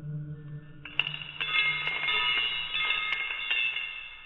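Metal surgical instruments clattering to the floor, starting about a second in with several metallic strikes and a ringing that lasts to near the end, over a low steady music drone.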